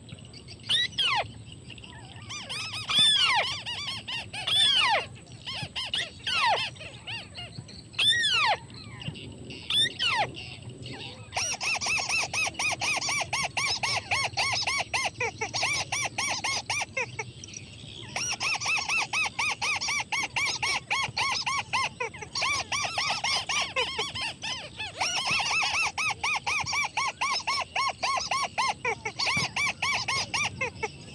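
White-browed crake calls: squealing calls that rise and fall, repeated, then from about eleven seconds in a long run of rapid chattering notes broken by a few short pauses.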